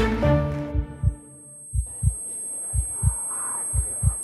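A music cue fades out, then a heartbeat sound effect begins: low double thumps about once a second over a faint hum. It marks a presenter's stage fright as she freezes before speaking.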